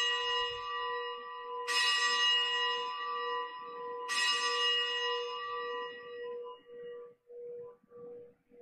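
A bell struck again and again about two and a half seconds apart, each stroke ringing out clearly and fading over a couple of seconds, with a low steady hum lingering as the last stroke dies away. It is rung at the consecration, as the host is elevated.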